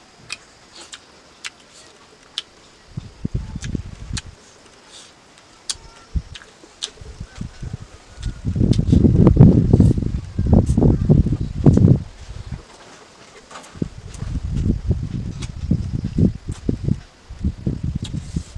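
Close-up eating sounds: chewing and sharp mouth clicks over a mouthful of rice and pickle, with fingers working rice on a banana leaf. Low rumbling gusts on the microphone come and go, loudest in the middle.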